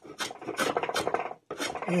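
Draw knife shaving the front edge of a wooden stool seat in quick, short scraping strokes, about six or seven a second, with a brief pause a little before the end. It is the saddling and forming of the seat's front edge.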